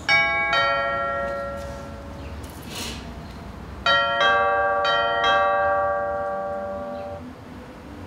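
Bell chimes: two struck notes right at the start, then four more about four seconds in, each ringing on and slowly fading.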